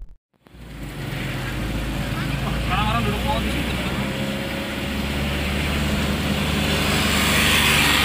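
Engine hum and road noise heard from inside the cab of a moving pickup truck, a steady drone with tyre and wind noise that starts abruptly about half a second in and slowly grows louder.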